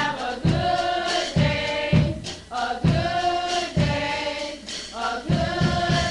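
Youth choir singing a gospel song over a steady low beat about once a second.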